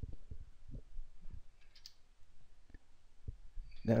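Typing on a computer keyboard: a scatter of soft, irregular key clicks.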